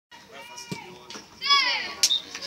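High-pitched children's voices calling out, the loudest a long shout that falls in pitch about one and a half seconds in.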